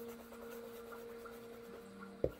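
Soft ambient music of long held notes, the low note stepping down near the end, over faint scratchy rubbing of a sponge dabbing acrylic paint onto canvas.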